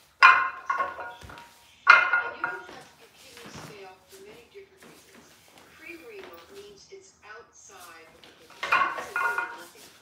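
Iron weight plates on a loaded deadlift barbell clanking, three times, each with a brief metallic ring.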